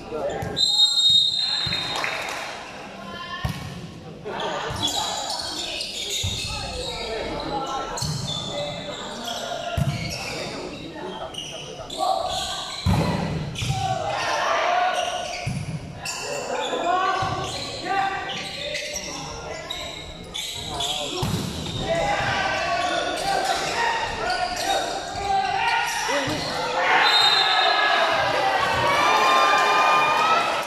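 Indoor volleyball match: repeated thuds of the ball being struck, mixed with shouting and cheering from players and spectators that echoes in a large sports hall. The cheering grows loudest near the end.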